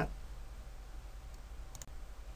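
Low steady hum of a quiet recording room, with a faint quick double click near the end as the presentation advances to the next slide.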